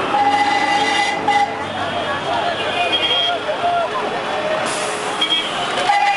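Busy city street traffic: buses running past, with horn toots in the first second or so and again briefly later, over people's voices.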